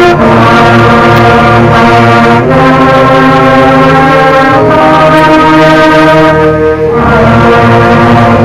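A beginner concert band of brass and saxophones playing a simple march, many of the players only two weeks on their instruments. The music goes in long held chords that change about every two seconds, loud in the recording.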